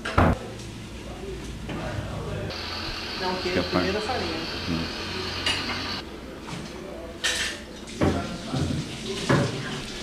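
Metal spoon knocking and scraping against a glass baking dish while food is spread in layers: one sharp knock right at the start and a few more in the last few seconds.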